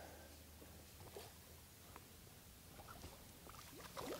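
Near silence, with a few faint short ticks and squeaks and a small splash of water near the end as the hooked trout thrashes at the landing net.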